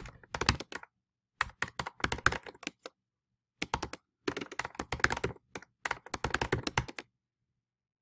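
Computer keyboard typing in quick runs of keystrokes with short pauses between them, stopping about a second before the end.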